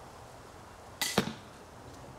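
80 lb pistol crossbow shot: a sharp snap of the string release about a second in, then, about a fifth of a second later, the louder smack of the bolt striking the archery target.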